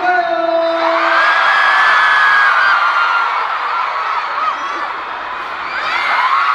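Large concert crowd screaming and cheering, many high-pitched voices overlapping. It eases a little about five seconds in and swells again near the end.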